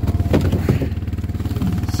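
Engine of a Yamaha Rhino side-by-side UTV idling steadily, with a few short knocks in the first second.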